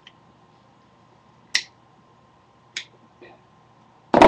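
Four short, sharp clicks at uneven spacing in an otherwise quiet room, the second one loudest and the last one faint.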